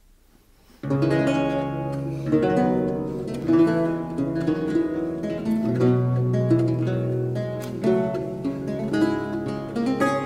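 Two baroque lutes playing an allemande as a duet, plucked chords over sustained bass notes, starting about a second in after a near-silent moment.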